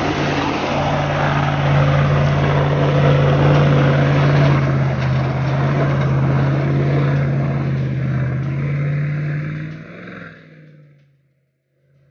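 Range Rover P38's 4.6-litre V8 engine working under load as the 4x4 crawls up a muddy rutted trail, a steady drone. It dies away near the end.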